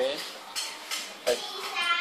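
Marker writing on a board, with short taps and a high squeak near the end. Voices can be heard in the background.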